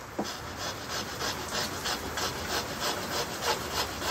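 Hand sawing with a cheap coping saw, cutting sideways across a piece of MDF: quick, even strokes, about four or five a second. The thin blade has too much play and bends in the cut.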